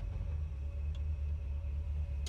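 1962 Ford Galaxie 500's engine idling, a steady low rumble heard from inside the cabin. The idle is set on a rigged-up throttle linkage that the owner has just readjusted.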